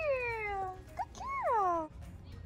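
Two long, high vocal calls, each sliding down in pitch; the second rises briefly before falling, and it cuts off near the end.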